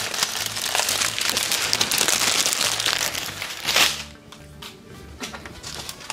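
Clear plastic bags of diamond-painting stones crinkling and rustling as they are handled and gathered up; this stops about four seconds in. Background music plays underneath.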